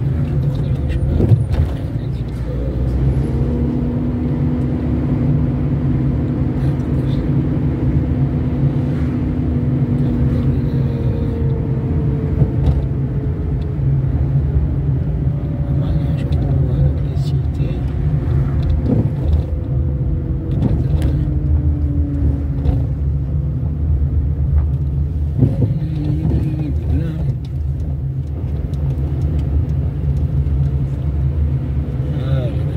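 Car running along a town street, heard from inside the cabin: a steady low rumble of engine and tyres, with a humming note that slowly falls in pitch over several seconds and a few short knocks from the road.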